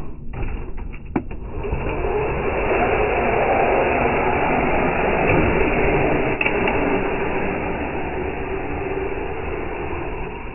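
Electric motor and drivetrain of a Traxxas TRX-4 RC crawler truck running as it drives and wheelies on pavement, with a few sharp clicks about a second in.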